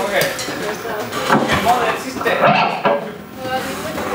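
Light clinking and clattering of small hard objects, with indistinct talking.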